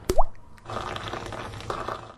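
A tea bag dropped into a mug of hot water: one short plop with a quick rising pitch just after the start, followed by a steady hiss for over a second.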